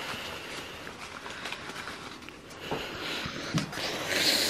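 Quiet room with faint rustling of paper slips being handled in a cap, and a few light taps.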